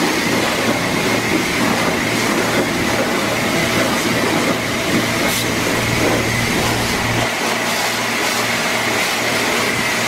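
High-pressure washer wand spraying water onto a car's bodywork and wheel: a steady hiss of spray with a steady high whine and a low hum under it.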